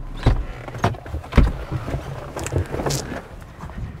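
Irregular knocks, thumps and clicks from handling in and around a car, about five or six of them, the loudest about a second and a half in.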